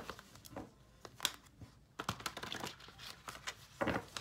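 A deck of tarot cards being shuffled by hand: irregular soft clicks and slaps of the cards against one another.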